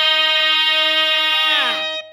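Instrumental music: a single held note, rich in overtones, that stays steady, then slides down in pitch near the end and fades out.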